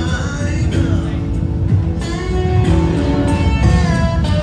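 A street musician's amplified guitar and singing, a melody of held sung notes over the guitar.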